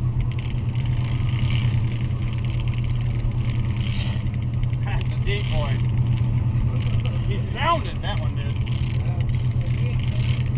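Steady low drone of the fishing boat's engine, with the whirring of a big-game 130-class trolling reel being cranked hard against a hooked fish. Brief voice-like calls come about five seconds in and again near eight seconds.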